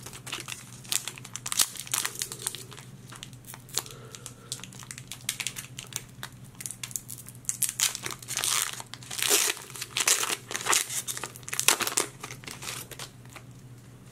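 Foil Pokémon trading-card booster pack being torn open and crinkled by hand, a run of quick sharp crackles. The crinkling gets louder in the second half as the cards are pulled out of the foil wrapper.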